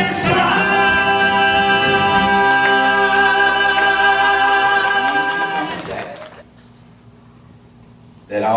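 Male southern gospel vocal trio singing in harmony through microphones and a PA, holding a long final chord that fades out about six seconds in.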